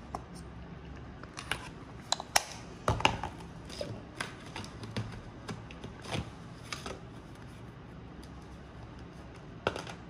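Irregular small clicks and taps of an acrylic paint tube, its cap and a paintbrush being handled at a palette, busiest in the first seven seconds, with one last click near the end.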